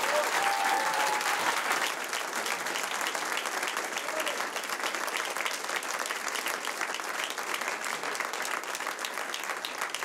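Audience applauding: loudest in the first couple of seconds, then steady.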